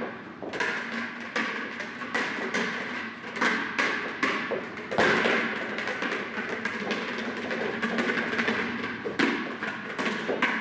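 A rubber playground ball bouncing and being kicked on a carpeted floor, with footsteps: a run of irregular thuds and taps at uneven spacing, the loudest about five seconds in.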